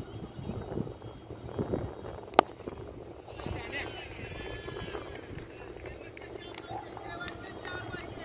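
A cricket bat striking the ball once, a sharp crack about two and a half seconds in, over open-air ground noise and distant voices.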